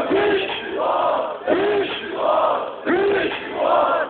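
Concert crowd chanting in unison: a shouted call repeating about every one and a half seconds, rising and falling each time.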